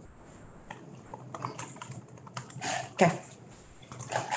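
Typing on a laptop keyboard: a quick, uneven run of key clicks, with one louder knock about three seconds in.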